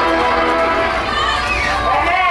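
A group of children's voices shouting and calling out as they run, with music that stops about half a second in.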